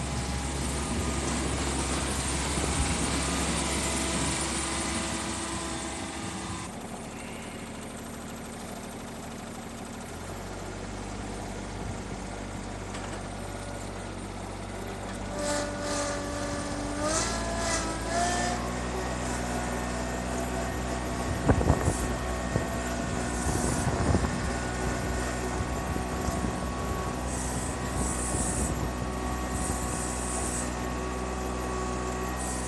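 John Deere F935 front mower's small diesel engine running under load while its front loader works snow. The engine note drops a few seconds in, then climbs in steps with a rising pitch around the middle, and a few sharp knocks come a little later.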